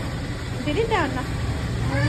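A steady low hum, with a brief stretch of a person's voice about a second in.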